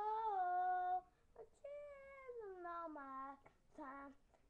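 A child singing long held notes, each sliding down in pitch. One note ends about a second in, a longer one runs from about a second and a half to three and a half seconds in, and a short one comes at the end.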